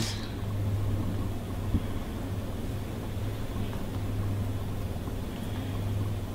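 Steady low hum under faint room noise, with one small tick a little under two seconds in.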